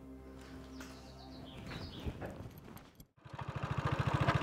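Soft background music with held tones for about three seconds. After a brief break, a motorcycle engine starts up in the mix, running with a rapid, even beat and growing louder as it approaches.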